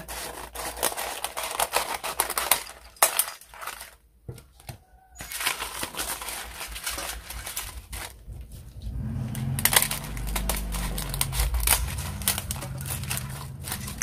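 Dry rice paper sheets crackling and crinkling as they are handled and snipped into small pieces with scissors over a stainless steel bowl. A low steady hum comes in about two-thirds of the way through.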